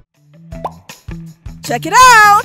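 Cartoon transition sound effect for a paint-drip wipe: a string of short pops and brief rising tones, ending in a quick upward sweep.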